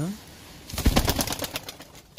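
A pigeon flapping its wings in a quick run of beats about a second long, starting just before the middle and fading off near the end.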